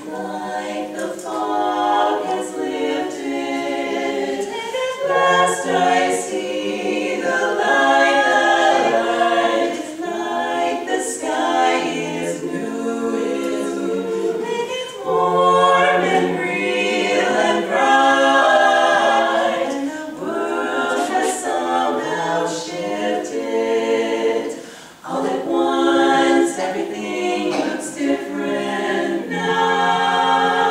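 A women's a cappella quartet singing in four-part close harmony, barbershop style, in held and moving phrases with a short break for breath about 25 seconds in.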